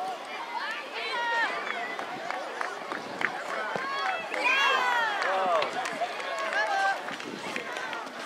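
Children's high-pitched shouts and calls during youth football play, loudest in a burst about a second in and again around four to five seconds in, over a general outdoor hubbub.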